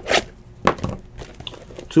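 Shrink-wrapped trading-card box being handled: a few short crinkles of its plastic wrap and light knocks, spread over a couple of seconds.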